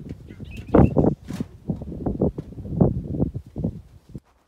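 Wind gusting over the microphone: an irregular low rumble that comes in uneven bursts.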